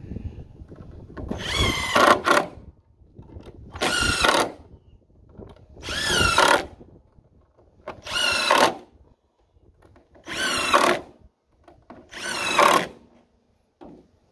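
DeWalt cordless drill/driver driving screws into wooden boards: six short runs of motor whine, about two seconds apart, one per screw.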